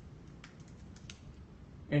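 A few light keystrokes on a computer keyboard, separate clicks over quiet room tone.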